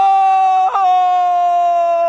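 A football commentator's long, drawn-out shout of "goal" (골), one held note that sags slightly in pitch, with a brief catch about two-thirds of a second in.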